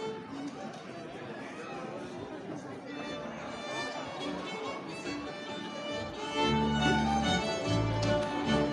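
A Swedish folk band strikes up a polska from the Nyköping area: fiddles start the tune about three seconds in, and the fuller band with low accompaniment comes in much louder about six seconds in. Room chatter fills the first few seconds.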